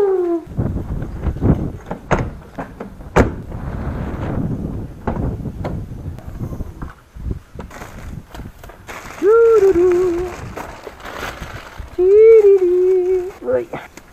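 Rustling, scraping and knocking as a car boot is opened and the boxes and bags in it are handled, with two sharp clicks about two and three seconds in. Two short, drawn-out voice-like calls come about nine and twelve seconds in.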